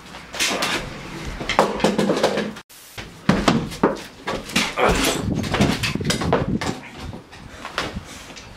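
Two people scuffling: repeated knocks and bangs against wooden doors and boards, mixed with grunts and cries. The sound cuts out for an instant about two and a half seconds in, then the knocking and struggling go on.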